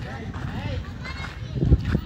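Tourists' voices talking, with a loud low thump near the end.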